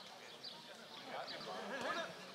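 Faint, distant voices of football players calling out across the pitch, a little louder near the end.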